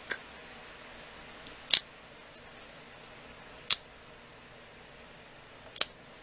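Three sharp little clicks, about two seconds apart, as a lump of polymer clay is squeezed and pressed into a block by hand; between them only faint room hiss.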